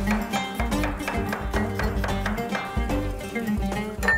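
Background music: a plucked acoustic guitar playing a melody over a steady bass.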